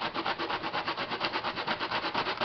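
Raw yuca (cassava) root grated by hand on a metal box grater: quick, evenly repeated rasping strokes as the hard root scrapes over the grater's teeth.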